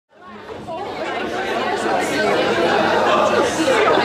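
Audience chatter in a hall: many people talking at once, fading in from silence over the first second.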